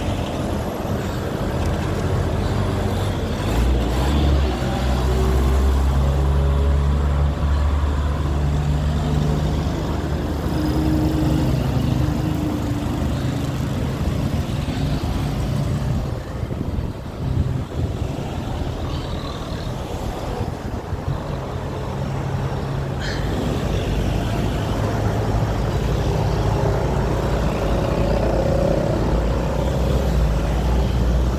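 Wind buffeting the microphone of a handlebar-mounted phone on a moving bicycle, a steady low rumble, with the engines of nearby cars and motorcycles running under it.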